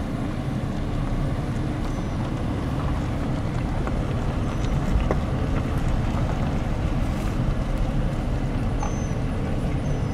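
Car driving slowly, heard from inside the cabin: a steady low rumble of engine and tyres. A few faint, short high chirps come through, mostly near the end.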